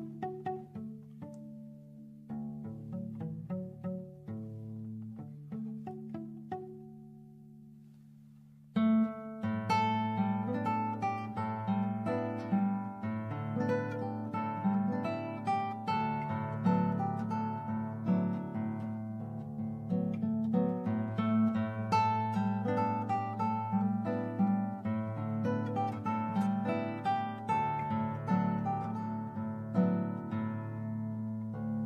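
Solo nylon-string classical guitar playing an arrangement of a traditional Cuban lullaby. It opens with sparse, quiet single notes over a held bass. At about nine seconds it turns suddenly louder and fuller, with many plucked notes ringing together.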